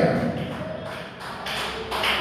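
A short gap in a man's amplified preaching: his last word trails off at the start, then a few faint knocks follow before he speaks again.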